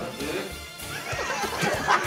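Hearty laughter, high and wavering, with a spoken word over background music.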